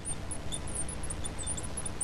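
Felt-tip marker squeaking on a glass writing board as a line of letters is written: many quick, irregular high-pitched chirps.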